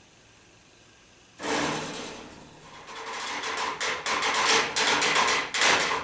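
A sharp strike about a second and a half in, then a quick, irregular run of clicks and knocks. It sounds like a percussionist tapping and striking cutlery and tableware on a small table.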